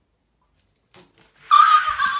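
A boy's loud scream about a second and a half in, held on one high, steady pitch for nearly a second, with a few faint clicks just before it.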